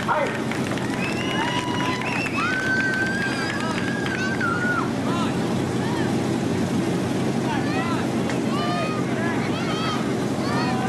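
Crowd of spectators at an outdoor track, with distant voices calling and shouting, one call held for a couple of seconds in the middle, over a steady low hum.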